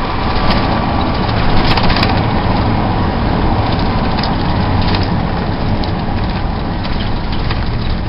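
Cabin noise inside a small shuttle bus under way: steady engine and road noise, with a few light rattles and knocks.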